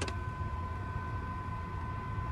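A vehicle engine idling as a low rumble, with a steady high-pitched whine held on two pitches above it.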